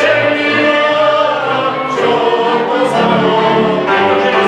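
Moravian folk cimbalom band (violins, cimbalom, cello and double bass) playing a folk song, with several voices singing together over the instruments.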